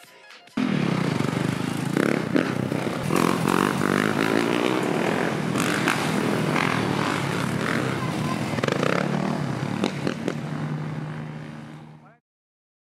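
Dirt bike engines running and revving on a city street, mixed with music. The sound cuts in about half a second in and fades out near the end.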